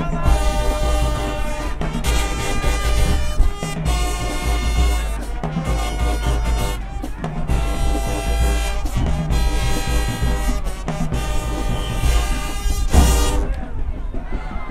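High school marching band playing, brass horns and sousaphones, in loud phrases of about two seconds broken by short pauses, over a heavy bass.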